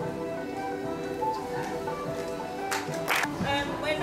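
A girls' choir's final sung notes fading out over the first second or two. Near three seconds in there is a brief rush of noise, and then a woman's voice begins to speak.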